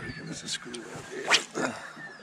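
Quiet bird calls: faint high whistles early on, then a short sharp rising chirp about a second and a half in, with faint clicks between.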